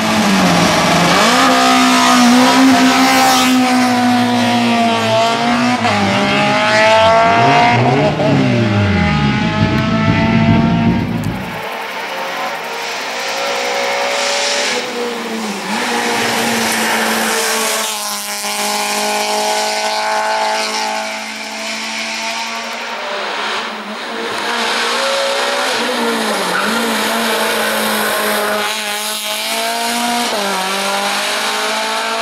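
Hill-climb race car's engine revving hard: its pitch climbs through each gear and falls back at every shift or lift as the car accelerates along a winding mountain road. A steady low hum runs underneath, and the sound changes abruptly a little over a third of the way in, as from one roadside spot to another.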